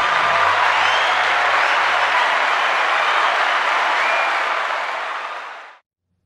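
A crowd applauding, a dense, steady clapping that fades out about a second before the end.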